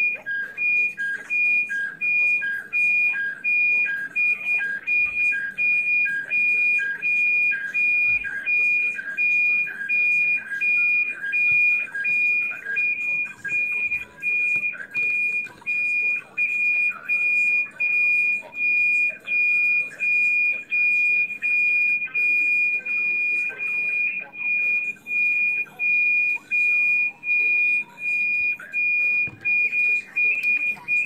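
Repeating high electronic beeps, about two a second. In the first half a lower beep alternates with them, making a two-note pattern; it fades out about halfway through.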